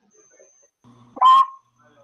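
A child's short, high-pitched spoken word over a video call, about a second in, after a quiet pause.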